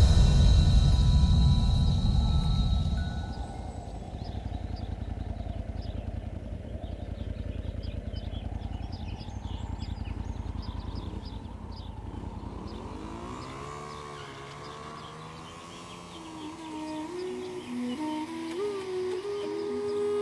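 Loud dramatic music fades out over the first few seconds, leaving a low, steady motorcycle engine rumble. About two-thirds of the way through, the rumble drops away and a gliding flute-like melody comes in, building into music near the end.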